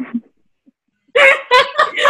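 Women laughing. After a short silence, the laughter comes in quick repeated bursts, several a second, starting about a second in.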